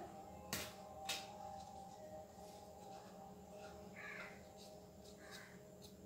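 Near silence: faint room tone, with two light clicks about half a second and a second in.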